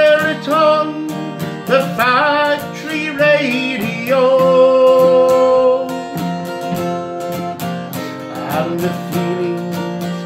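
A man singing a slow ballad to his own strummed steel-string acoustic guitar, holding one long note about four seconds in. The guitar carries on alone for a couple of seconds before the voice comes back near the end.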